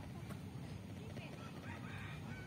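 Faint rooster crowing, with faint human voices underneath.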